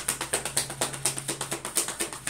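A deck of tarot cards being shuffled by hand: a fast, even run of soft card-on-card clicks, about ten a second.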